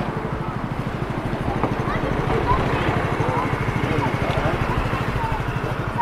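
A motor vehicle's engine running at low speed close by, a steady low pulsing, with people talking around it.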